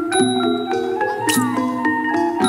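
Thai classical ensemble music led by struck mallet instruments, such as a ranat xylophone, playing quick runs of ringing notes. There is a bright metallic stroke about one and a half seconds in.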